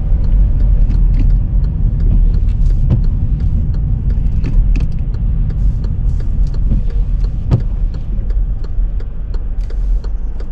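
Inside a moving car: a steady low engine and road rumble, with a few faint clicks scattered through it. It grows slightly quieter in the second half as the car eases toward the junction.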